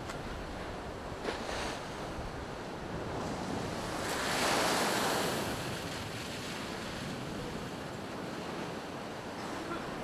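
Storm waves breaking against a promenade sea wall under a continuous roar of surf. One big wave crashes and throws spray over the railings, swelling about four seconds in and dying away over the next two seconds.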